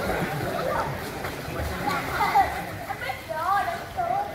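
Children's voices calling out and chattering indistinctly at a swimming pool, with high, wavering calls near the end.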